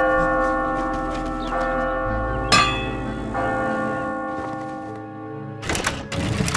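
Clock-tower bell tolling: one strike at the start and a second about two and a half seconds in, each ringing out and slowly fading. A brief clatter comes near the end.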